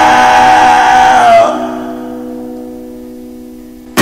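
A rock band holds a long note at full volume for about the first second and a half. Then a guitar chord is left ringing and fades slowly through the rest.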